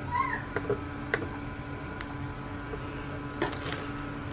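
Two short, high-pitched mewing cries right at the start, rising and falling in pitch, like a small animal's call. A few light clicks follow, and near the end a brief crinkle of plastic packaging being handled.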